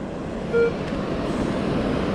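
Metal detector giving one short beep over a target about half a second in, against a steady rush of surf and wind.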